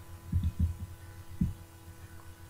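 A few soft, low thumps close to the microphone, the last about one and a half seconds in, over a steady electrical hum.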